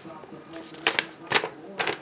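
Paper from opened mail being handled, giving four or five short crackling rustles about half a second apart.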